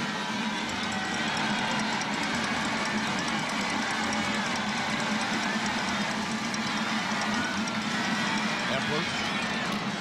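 Steady crowd noise from a large stadium audience, a dense wash of many voices that holds level as a play is run.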